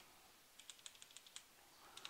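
Faint computer keyboard keystrokes: a quick run of about seven key presses, as a word of text is deleted and retyped.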